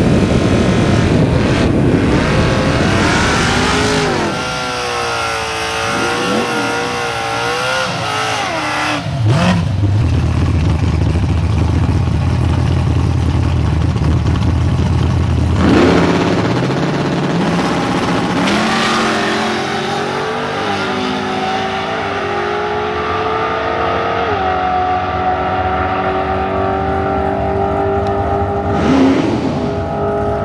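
Fox-body Ford Mustang drag car's engine: first running with a wavering pitch, then a steady low rumble. About sixteen seconds in it launches hard and runs at full throttle, its pitch climbing in steps at each gear change for the rest of the pass.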